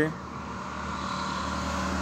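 A motor vehicle engine running with a steady low hum that grows slowly louder.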